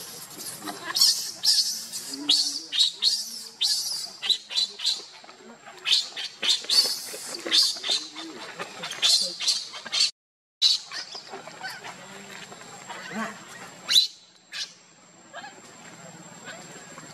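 Baby macaque crying in distress after being pushed away by its mother: a rapid string of short, shrill squeals. The cries break off in a brief silence about ten seconds in, then come more sparsely.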